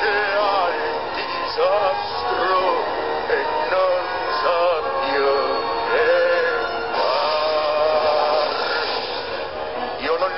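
A man singing in Italian over orchestral accompaniment, holding one long note near the end.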